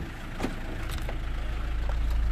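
2000 Hyundai Libero one-ton truck's turbo-intercooled engine idling steadily, getting slowly louder, with one short knock about half a second in.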